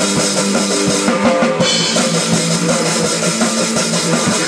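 A band playing live: a drum kit with bass drum and cymbals keeping a steady beat, under an electric guitar played through an amplifier.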